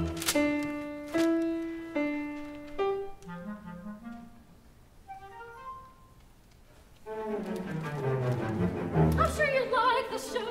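Opera orchestra playing an instrumental passage: a few held chords with sharp attacks, then soft descending notes that fade almost to silence, before the orchestra comes back in more fully about seven seconds in.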